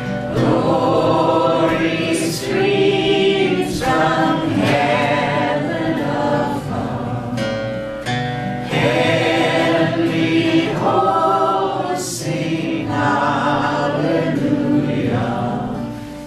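A man and a woman singing together live, accompanying themselves on two strummed acoustic guitars.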